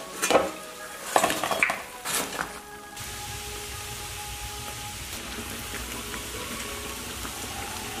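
A few clinks and knocks of wooden chopsticks and a metal strainer against a plate as deep-fried dough sticks (youtiao) are set down. About three seconds in, this gives way to a steady sizzle of youtiao deep-frying in hot oil.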